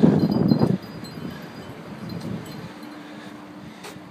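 Wind buffeting the microphone outdoors: a loud gust for under a second at the start, then a quieter steady hiss.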